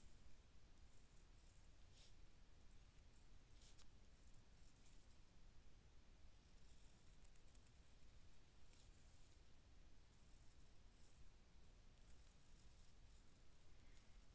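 Near silence with faint, intermittent scratching of a fine-tip Micron pen drawing outlines on sketchbook paper.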